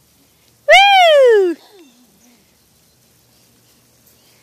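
A single high-pitched, excited vocal squeal, like an 'ooh!', about a second in. It rises and then falls in pitch and lasts under a second.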